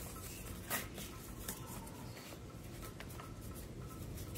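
Shoelaces of a trail-running shoe being pulled and tied into a knot: faint rustling and scratching of the laces, with a light click about three-quarters of a second in.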